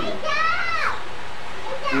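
A child's high voice calls out once in the background, rising and then falling in under a second. A steady background hiss follows it.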